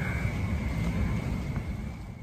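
Outdoor night background: a low, uneven rumble on the microphone with a steady high-pitched tone over it, getting fainter toward the end.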